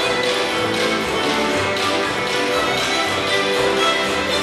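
Fiddle orchestra playing a fast reel: a lead fiddle over massed fiddles with guitars, double bass and piano, and a steady tapping beat running through it.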